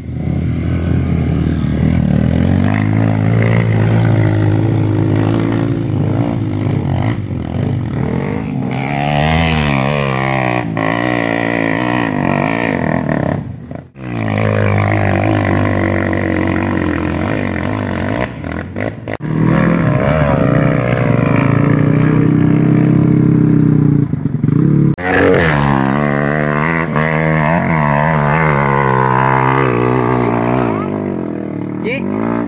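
Trail motorcycle engines revving hard under load as the dirt bikes climb a steep dirt hill, the pitch repeatedly rising and falling with the throttle. The sound breaks off sharply a few times.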